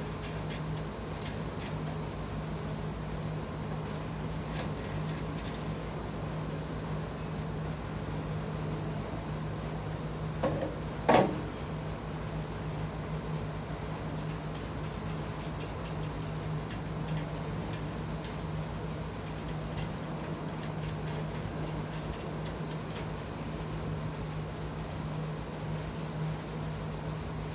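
Light clicks of hand work fastening a caster to a sheet-steel toolbox panel, over a steady low hum, with one loud clank of metal about eleven seconds in.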